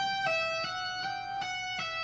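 Electric guitar playing a slow legato phrase of hammer-ons and pull-offs: about six ringing notes, each sliding into the next without a fresh pick attack, the pitch stepping a little up and down. It is fairly quiet.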